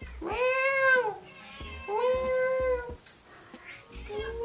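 A domestic cat meowing twice, two drawn-out meows, each rising and then falling in pitch.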